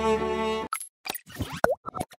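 Sustained cello-led string music chord that cuts off abruptly under a second in. It is followed by a few short clicks and a quick swooping blip, like an editing transition effect.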